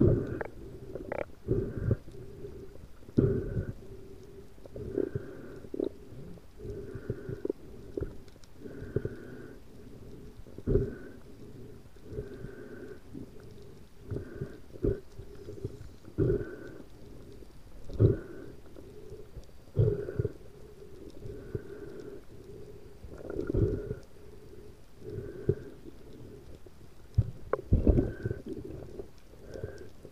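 Muffled underwater noise picked up through an action camera's waterproof housing: water moving over the case in pulses about every two seconds, with sharp knocks against the housing.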